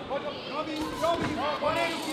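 Boxing crowd shouting over one another, many short rising-and-falling calls overlapping.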